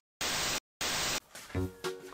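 Burst of TV-static hiss used as a transition sound effect, cutting out twice for a split second, then background music begins about one and a half seconds in.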